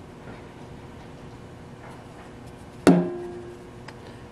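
A single sharp clink about three seconds in, a hard object struck once and ringing with a clear tone that fades over about a second, over a faint steady background noise.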